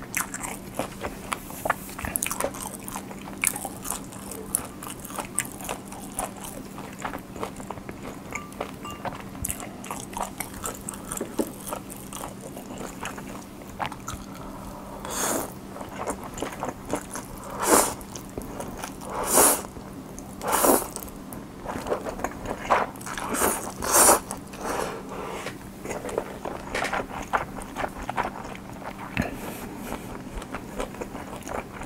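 Close-miked eating of Nongshim cold ramen: steady wet chewing with small mouth clicks, then about halfway through a run of about six loud noodle slurps from chopsticks, followed by more chewing. A faint steady hum sits underneath.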